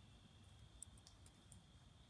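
Near silence: faint background with a few faint clicks about a second in.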